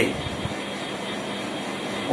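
Steady, even background noise from a running machine in a small room, with no voice over it.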